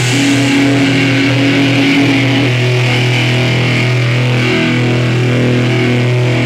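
Distorted electric guitar ringing out through its amplifier as a steady, loud low drone with a few held overtones, and no drumming: the band letting the final chord sustain.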